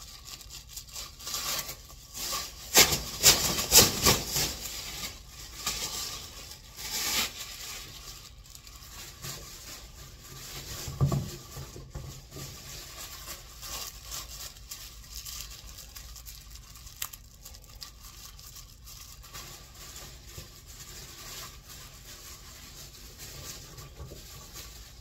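Black plastic trash bags rustling and crinkling as they are lifted and handled, loudest in the first several seconds. A dull thump comes about eleven seconds in, followed by softer, intermittent rustling.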